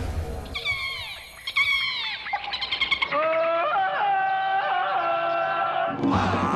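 TV title-sequence jingle built from jungle animal-call sound effects over music: two high falling cries, then a string of held calls that bend in pitch.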